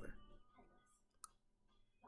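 Near silence: room tone, broken by a single brief click a little past halfway.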